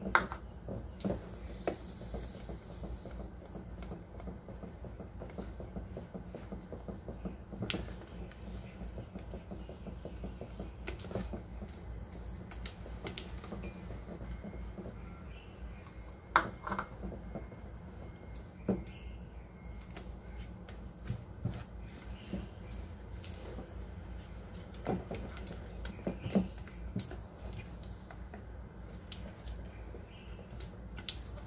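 Silicone spatula stirring thick cake batter in a stainless steel bowl: irregular soft scrapes and taps against the bowl, with a few sharper knocks, the loudest right at the start and about halfway through.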